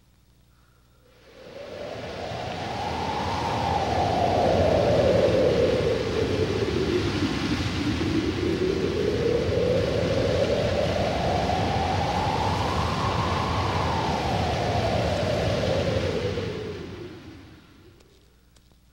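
A loud, wind-like rushing sound effect that swells in, with a whooshing pitch that slowly sweeps up and down twice before fading out near the end.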